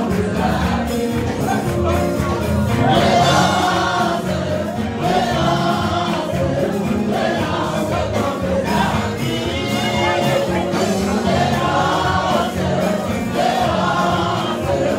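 Choir singing a Christian gospel worship song with musical accompaniment.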